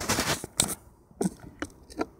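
A mobile phone being fitted into a small clamp on a metal bar, picked up as handling noise on the phone's own microphone: a short scraping rustle at the start, then several sharp clicks and knocks spread through the rest.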